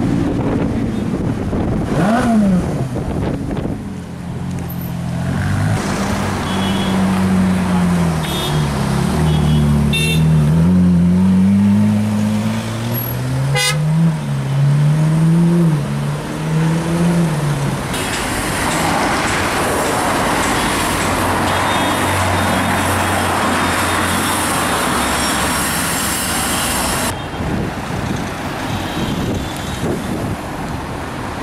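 Ferrari engine revved over and over in slow traffic, its note rising and falling, with car horns tooting. Later it gives way to steady traffic and road noise.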